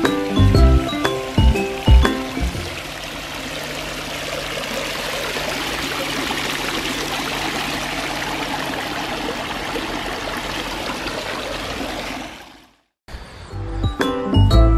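Background music with a beat for the first couple of seconds, then a tiered stone garden fountain splashing steadily, water spilling from the upper bowl into the basin, heard close up for about ten seconds. It cuts off suddenly, and the music returns near the end.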